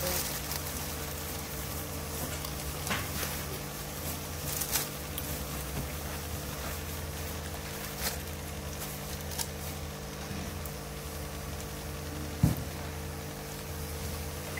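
Aquarium air stone bubbling over a steady hum from the tank's equipment, with a few faint knocks and one short, louder thump about twelve seconds in.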